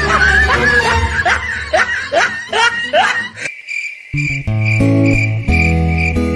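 Laughter over background music, a run of short laughs each rising in pitch. About three and a half seconds in, the music cuts off, and after a short gap a new track with plucked guitar notes and a steady, pulsing high tone begins.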